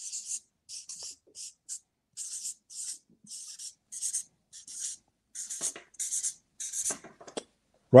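Marker writing on a flip-chart paper pad: a run of short, high hissing strokes, about two a second, with brief pauses between letters.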